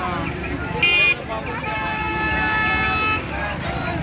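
Vehicle horns honking from traffic held up by a road blockade: a short, high toot about a second in, then a longer blast of about a second and a half at a different pitch, over crowd chatter.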